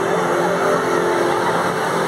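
A motor vehicle's engine running with a steady drone, over the noise of a street crowd.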